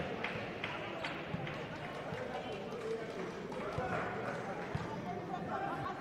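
Indoor basketball court ambience: a background murmur of voices in the hall, with a few short thuds of a ball bouncing on the hardwood floor.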